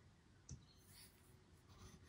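Near silence, with faint rustling as hands handle small crocheted cotton lace pieces in a cardboard box, and one soft click about half a second in.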